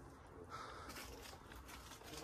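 Near silence: faint background noise with no distinct sound standing out.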